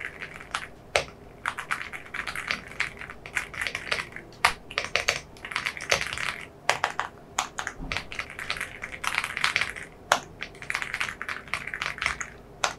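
Typing on an AULA F75 75% gasket-mount mechanical keyboard with hot-swappable switches: rapid bursts of key presses with brief pauses between them, and a few single, sharper key strikes.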